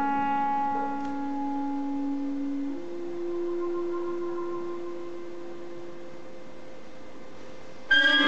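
Clarinet, violin and harp trio in a contemporary chamber piece, playing long quiet held notes. The main tone steps up a little in pitch about three seconds in and slowly fades. A loud plucked chord starts right at the end.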